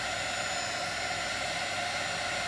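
Heat gun running with a steady blowing hum, used to warm mixed epoxy and draw out the air bubbles trapped by fast stirring.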